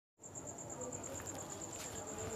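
Faint insect trill: a steady, high-pitched pulsing chirp that starts just after the opening, over quiet room noise.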